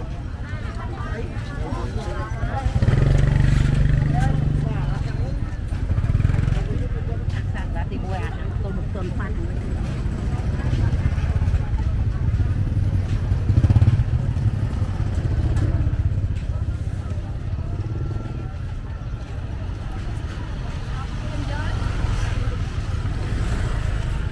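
Busy street-market ambience: small motorbike scooters riding past close by, swelling louder around three to five seconds in and again about halfway through, over people talking all around.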